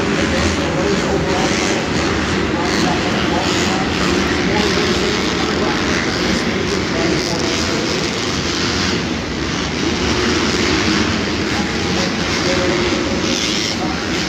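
Supercross dirt bikes racing on the track, their engines revving and echoing around an indoor stadium in a steady loud din.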